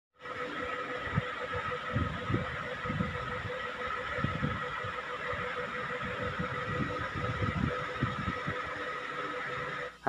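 Steady background noise with a few faint steady tones and irregular low rumbles and thumps through it.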